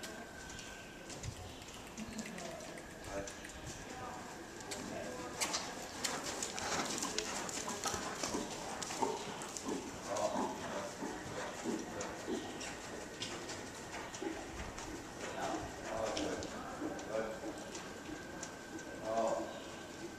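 Hoofbeats of a horse cantering on the dirt footing of an indoor riding arena, a run of soft irregular thuds, with faint indistinct voices now and then.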